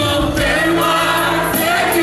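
A group of voices singing a hymn together, holding long notes that waver slightly.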